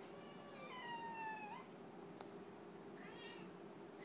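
Domestic cat meowing, whiny. A drawn-out meow comes about half a second in, sliding slightly down in pitch and turning up at the end. A shorter, fainter meow follows about three seconds in, with a faint click between them.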